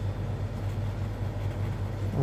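A steady low hum with a faint hiss, the room's constant background noise.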